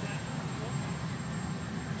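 Steady low rumble of a running engine, with a faint voice in the background.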